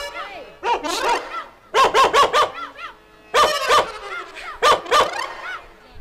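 Short, high yelping calls, like barking, in quick runs of three to five, heard through a stage sound system.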